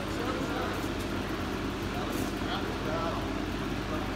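Steady low hum of an indoor sports hall with faint voices in the background, and a couple of sharp clicks from a table tennis ball, about a second apart.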